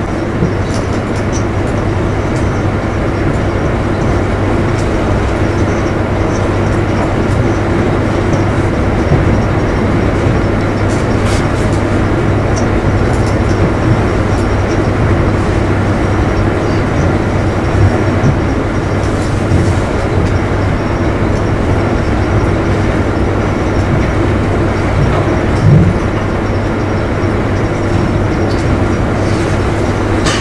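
Loud, steady rumbling noise with a constant low hum beneath it, unchanging throughout, with no speech.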